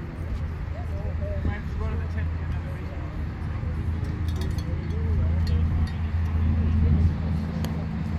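A low, steady engine hum that swells from about five seconds in and eases just before the end, under faint distant voices.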